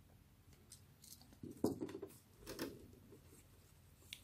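Handling noises at a craft table: a few faint ticks, then two short bursts of rustling and clicking, the first about a second and a half in the loudest, as the lighter and satin ribbons are handled.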